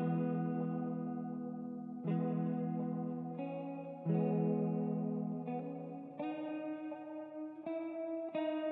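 Clean guitar played through effects in a slow, calm ambient piece. Chords are struck about every two seconds and left to ring and fade, with single notes added between them.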